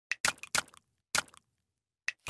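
Intro sound effects for an animated logo: a quick run of short, sharp cracking hits, four of them in the first second and a half, each dying away quickly.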